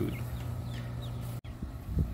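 Hens clucking over a steady low hum, with the sound cutting out for an instant about one and a half seconds in.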